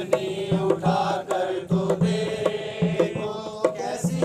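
A group of people singing an Urdu hymn together in unison, accompanied by a hand-played dholak barrel drum beating a steady rhythm.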